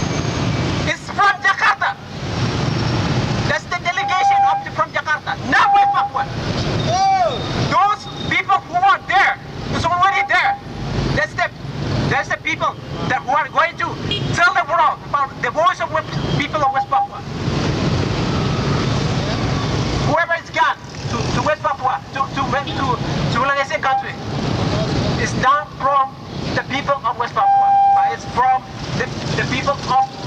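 A man speaking loudly through a handheld megaphone, his voice harsh and distorted, in long phrases broken by short pauses, with street traffic in the background.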